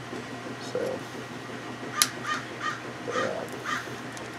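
A sharp click about two seconds in, then a bird calling: about five short, evenly spaced calls.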